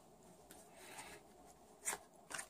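Tarot cards handled on a cloth-covered table: a soft sliding rub of card on card and cloth through the middle, then one crisp card click near the end.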